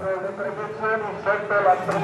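A man's voice talking: Italian football commentary.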